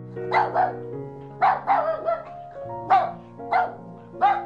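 A dog barking: a run of short, sharp barks, some in quick pairs, over soft background music.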